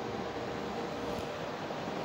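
Steady fan noise of running computer equipment and a portable air conditioner in a small room, with a faint steady hum in it.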